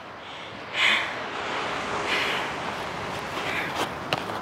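A person's breathing close to the microphone, a few soft puffs over a steady rush of outdoor noise, with a short click near the end.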